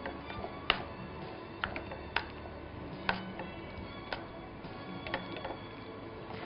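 Soft background music, with a spoon clicking lightly against a mixing bowl every second or so as oats pancake batter is stirred.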